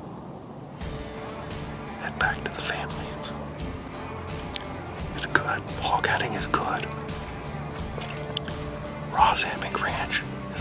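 A man whispering in short phrases over soft background music.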